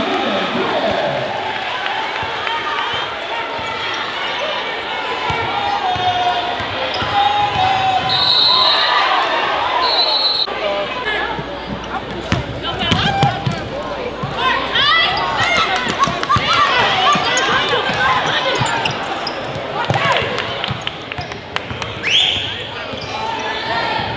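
Basketball dribbled on a hardwood gym floor amid steady crowd chatter in a large hall, with sneakers squeaking on the court. Two short, shrill whistle blasts come about eight and ten seconds in.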